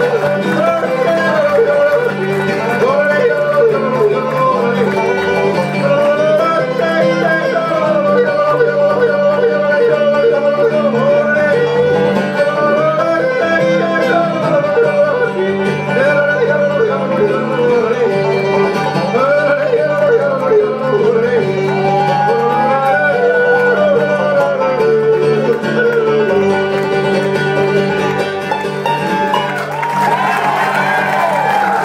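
Live acoustic bluegrass band, with upright bass, acoustic guitar, mandolin and banjo, playing a slow country song while a man sings and yodels the lead, his voice leaping up and down in pitch.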